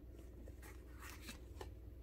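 Faint rubbing and a few soft taps of tarot cards being handled as a card is drawn from the deck, over a low steady room hum.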